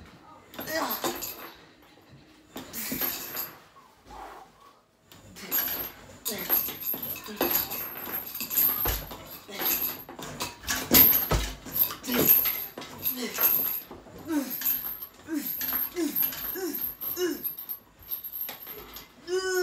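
Hard, fast breathing and straining from a man working through a slow set of leg extensions on a home multi-gym machine, with sharp metal clicks from the machine. The breathing gets heavier and almost continuous after about five seconds, and a run of five short grunts comes near the end as he nears failure.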